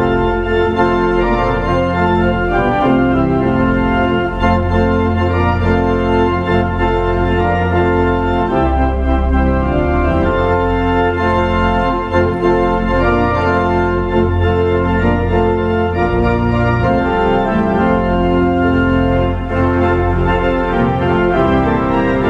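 Two-manual church organ playing a prelude: sustained chords held continuously over a low pedal bass line.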